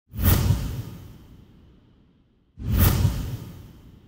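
Two whoosh sound effects for an animated title sequence, about two and a half seconds apart, each hitting suddenly and fading away over about a second and a half.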